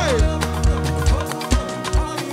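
Live praise band playing an upbeat dance groove, with a steady kick drum about three beats a second, bass and percussion. A singer's note falls away at the very start.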